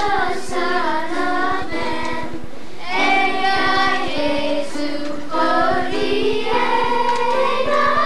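Children's choir singing together, a melodic line of held notes, with a short pause between phrases about two and a half seconds in.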